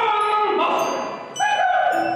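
A live stage play: drawn-out, pitched vocal cries or sung notes from the actors, several held notes changing in pitch, with music.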